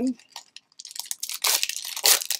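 Foil Pokémon booster-pack wrapper crinkling as it is handled and torn open. The crinkling starts about a second in and gets louder near the end.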